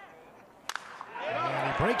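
A wooden baseball bat striking a pitched ball with a single sharp crack about two-thirds of a second in, the bat breaking on contact. A man's play-by-play commentary follows near the end.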